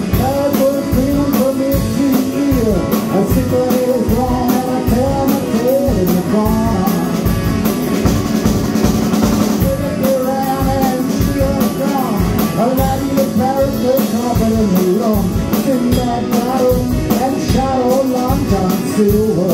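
Live rock band playing: electric guitar, drum kit and electric keyboard, with a melodic lead line bending up and down over a steady drum beat.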